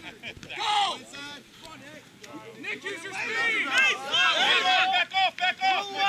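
Rugby players and sideline onlookers shouting and calling out over one another. There is a short loud shout about half a second in, then a dense run of overlapping calls from about two and a half seconds on.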